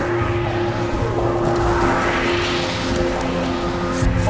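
Experimental electronic noise-drone music: steady low droning tones under a wash of noise that rises in pitch from about a second in to near the three-second mark.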